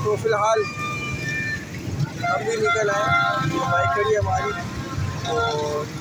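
Busy street celebration: motorbike engines running steadily underneath, with voices shouting over them and short toots of plastic trumpet horns (bajas).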